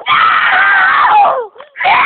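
Young people screaming loudly: one long scream that drops in pitch as it ends, then after a short break a second scream begins near the end.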